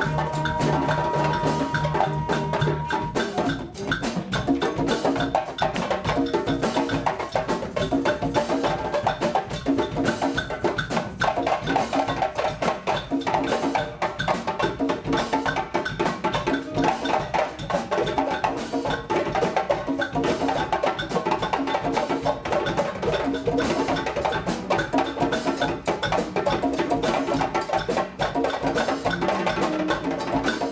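Live student band playing a funky groove: saxophones, flute and trombones over drum kit and congas, with a steady percussion pattern throughout. One long note is held in the first few seconds.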